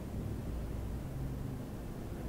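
Graham Brothers traction elevator car descending its glass-walled shaft, giving a steady low hum.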